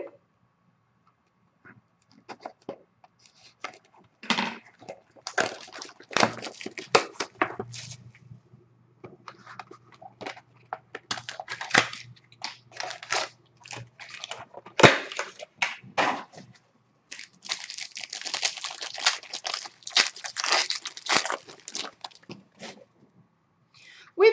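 Hockey card box and its wrapping being opened by hand: irregular bursts of tearing, crinkling and rustling of plastic and cardboard, densest for a few seconds near the end.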